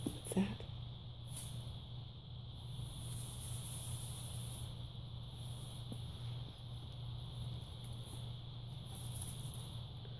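Quiet room tone: a steady low hum and a faint steady hiss, with a brief bit of voice just after the start and no clear sound from the kittens' play.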